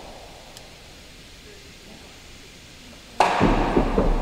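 Quiet indoor court ambience, then, about three seconds in, a real tennis serve is struck with a sudden loud crack, followed by continuous rumbling noise as the solid ball runs along the wooden penthouse roof.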